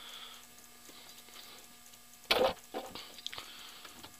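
Hands working on parts around the valve cover of a big-block engine that is switched off: light rustling and handling, then a short loud clatter a little over two seconds in, followed by a few small clicks.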